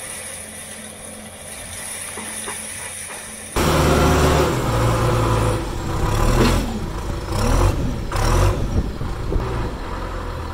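Quieter distant machine sound at first, then, from about 3.5 s in, a John Deere 310SE backhoe's turbo diesel engine running loud under load as its loader bucket is pushed into a pile of stone. The engine pitch rises and falls between about 6 and 8.5 s.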